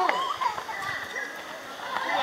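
A small child's high voice calling out briefly at the start, then quieter background voices.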